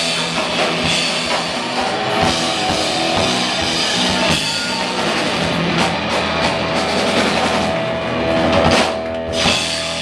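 Punk rock band playing live: distorted electric guitars, bass and drum kit at full volume, heard from the crowd through the club's sound system.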